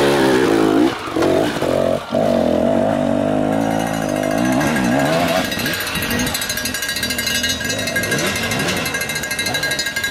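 Two-stroke enduro dirt bike engines revving and popping at low speed, changing pitch at first, then settling into a fast, rattling beat in the second half.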